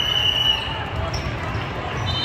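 A referee's whistle blast: one steady high note that stops about half a second in, over the crowd chatter of a busy volleyball hall.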